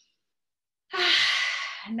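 A woman's long audible sigh, a breath let out for about a second, starting about halfway in after a moment of dead silence.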